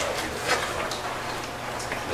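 Sheets of paper rustling, with a few short crackles.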